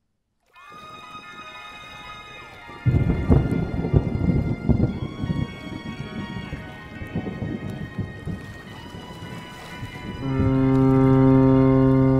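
Eerie ambient soundtrack. Sustained tones with slow pitch glides come in after a moment of silence. About three seconds in, a rumbling thunderstorm with crackling rain comes in, and near the end a deep, steady drone with many overtones swells in and holds.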